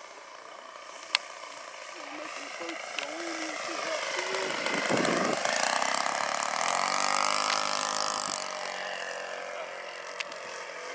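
O.S. 120 four-stroke glow engine of a Great Planes Tiger Moth RC biplane making a low pass. The engine grows louder and is loudest around the middle, its pitch drops as the plane goes by, and it fades as the plane climbs away. A sharp click comes about a second in.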